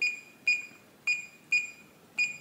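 Reliabilt electronic deadbolt keypad beeping once for each key pressed as a code is entered: four short, high, identical beeps, coming in two pairs.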